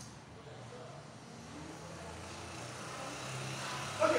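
A low, steady motor hum that grows slowly louder.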